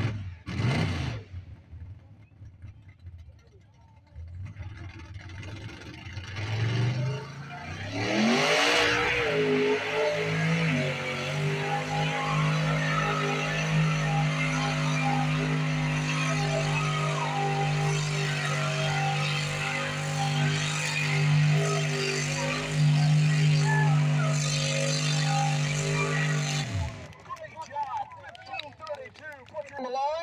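Pickup truck's engine revving up and then held at high, steady revs as it drives through a mud-bog pit, dropping off just before the end.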